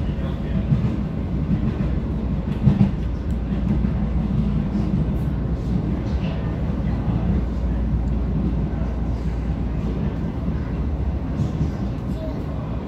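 Cabin noise of a Vienna U-Bahn Type V metro car running on its line and pulling into a station: a steady low rumble of wheels on track, with one short knock a little under three seconds in.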